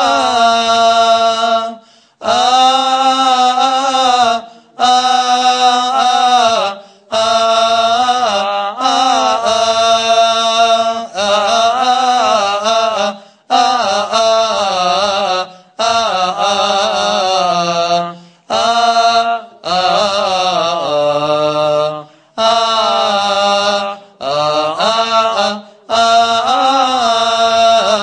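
A single man's voice chanting a liturgical hymn through a microphone, with ornamented, gliding melody in phrases of about two seconds separated by short breaths.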